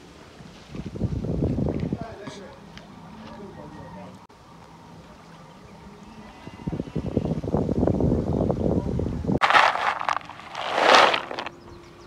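Outdoor ambience with faint background voices, low rumbling noise twice and a loud rustling burst near the end.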